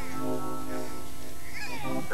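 Soft, sustained keyboard chords in the style of a church organ, held steadily under a pause in the preaching.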